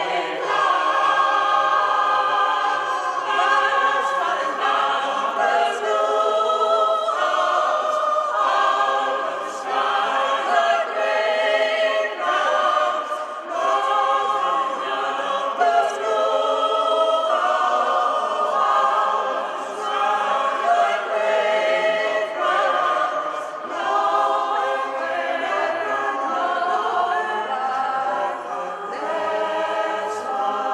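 Mixed choir of men's and women's voices singing unaccompanied in several parts, in continuous phrases with brief breaths between them.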